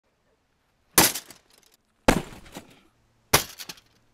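Three heavy strikes of a long-hafted sword-axe into an armoured target, about a second apart. Each is a sudden crash that dies away within about half a second.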